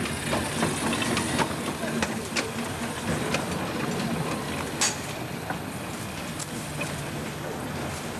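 Small narrow-gauge steam tank locomotive running past at low speed and moving away, its wheels clicking over the rail joints about once a second, with one louder clank about five seconds in.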